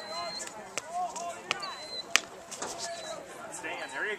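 Faint background voices of people talking, with several sharp clicks or knocks; the loudest knock comes about two seconds in.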